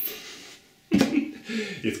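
Mostly speech: a man's voice, which starts about a second in after a short quieter pause with a soft fading hiss.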